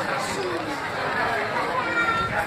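Crowd chatter: many overlapping voices of children and adults talking at once, with no single clear speaker.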